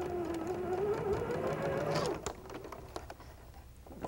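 Janome electric sewing machine stitching a seam. Its motor whine rises in pitch as it speeds up, then stops about two seconds in, followed by a few light clicks.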